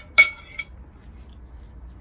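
A metal spoon clinks once against a glass bowl, a sharp strike with a short ringing tone, followed by a faint second tap.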